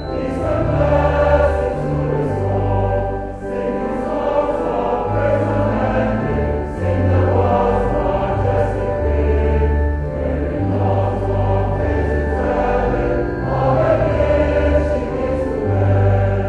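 Choir singing a hymn with organ accompaniment; the held bass notes change every second or two.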